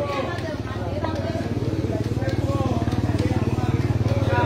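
Several people talking and calling out over a steady low engine drone with a rapid even throb.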